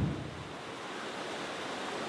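Steady, even rushing noise of a fast-flowing river swollen by monsoon rain, with wind on the air.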